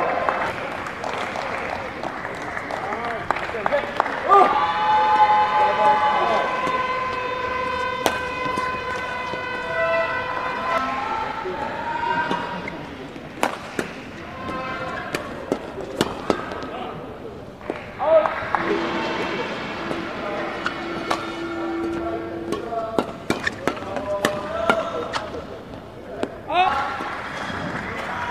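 Badminton rally: sharp racket hits on the shuttlecock, in quick runs around the middle and near the end, with long drawn-out shouts and calls from voices in the hall.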